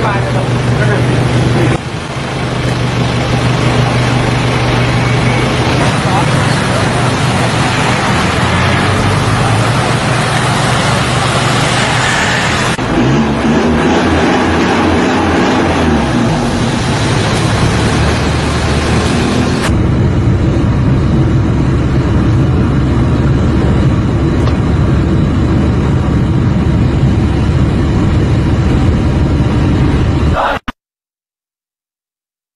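Road traffic and vehicle engines running with a steady low hum, in several roughly recorded roadside clips whose sound changes abruptly about 2, 13 and 20 seconds in.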